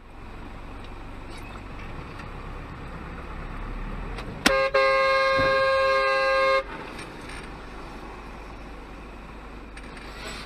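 Car horn honked about four and a half seconds in: a quick tap and then a steady blast held for about two seconds, over the steady road noise of moving traffic.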